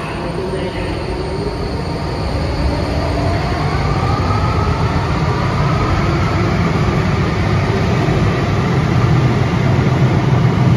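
Porto Metro light rail train pulling out of an underground station: its electric traction motors whine, rising in pitch over the first six seconds or so as it accelerates, over a rumble of wheels on the track that grows steadily louder as the cars pass.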